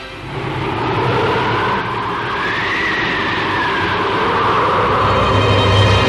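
Cartoon sound effect of a blizzard wind: a rushing noise that rises in pitch about halfway through and falls back, with music under it.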